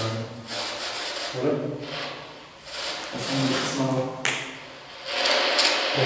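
Indistinct male voice in short, broken phrases over a steady hiss, with one sharp click a little after four seconds.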